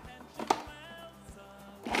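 A sharp plastic click as the food processor's lid and pusher are pressed into place, then the food processor's motor starts up loud just before the end, beginning to blend roasted jalapenos.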